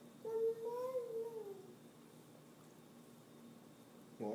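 A toddler's single long sung vowel, held for about a second and a half, rising a little in pitch and then falling away; then quiet.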